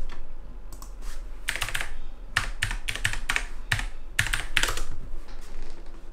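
Typing on a computer keyboard: a run of quick, irregular keystrokes coming in short clusters.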